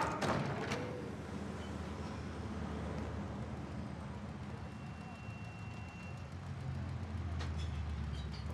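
Steady low rumble of street traffic, city background noise.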